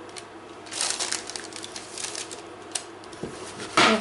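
Fingers pressing and dimpling raw pizza dough in a tin set on baking paper, giving a quick irregular run of soft crackles and rustles. A louder brief sound follows near the end.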